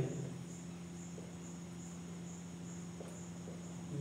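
Quiet room tone: a steady low hum with a high, thin, evenly pulsing chirp throughout. A few faint ticks come from a marker writing on a whiteboard.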